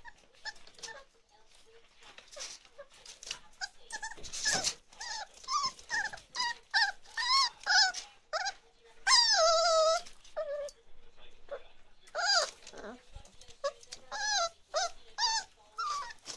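Chocolate Labrador puppies about five weeks old whining and yipping in many short, high-pitched calls that come thicker from a few seconds in, with one longer wavering whine near the middle.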